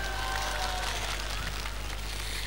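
A short break between sung lines in a live stage concert: faint crowd noise like scattered applause, with a thin trace of the backing band holding a note early on, over a steady low hum from the old tape.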